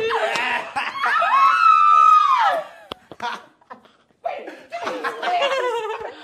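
Several people laughing: a long, high-pitched laugh that trails off over the first couple of seconds, a brief lull, then more laughter and chatter.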